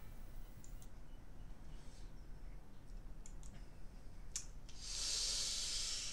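A few separate computer-mouse clicks, then a breathy hiss of just over a second about five seconds in, like a breath let out near the microphone.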